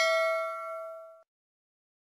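The bell chime sound effect of a subscribe-button animation: one ding with bright overtones rings out, fades and stops a little over a second in.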